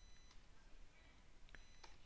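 Near silence: room tone with a couple of faint computer keyboard clicks about a second and a half in, as a word in the code is retyped.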